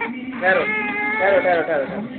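A young child crying while having his hair cut: one long, drawn-out wail starting about half a second in.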